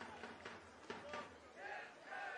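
Faint pitch-side sound of a football match in a near-empty stadium: players' distant shouts and calls across the pitch, with a couple of short knocks about a second in.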